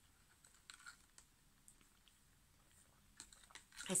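Faint sipping of slush through a straw, heard as soft scattered clicks and small mouth sounds in a few brief clusters.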